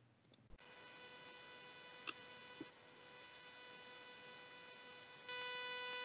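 Faint, steady electrical buzz on one pitch, getting louder about five seconds in, with a couple of soft ticks.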